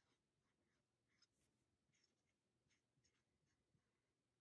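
Near silence, with very faint, short scratching strokes of a felt-tip marker drawing a bumpy outline on paper.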